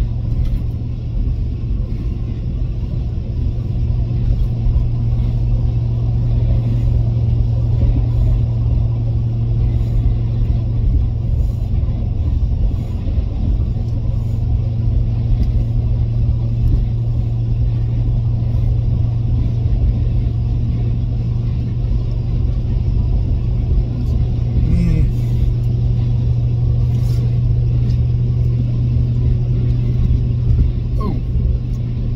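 Steady low drone of a vehicle's engine and road rumble heard from inside the cab, an even hum that holds the same pitch throughout.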